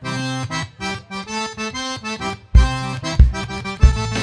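Cajun button accordion playing a solo intro to a song. About two and a half seconds in, the drums and bass guitar come in with a steady beat and the full band plays.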